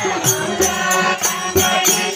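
Group devotional chanting with harmonium accompaniment, over a steady percussion beat of about three strokes a second.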